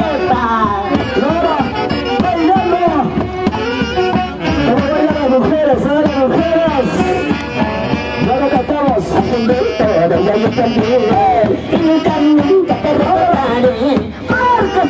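Live Andean folk band music carried by saxophones, playing a continuous dance tune with several wavering melody lines over one another.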